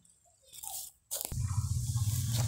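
Fingers crumbling a little compost over a seed row, a brief soft crunch about half a second in. After a short break, a steady low rumble with hiss takes over.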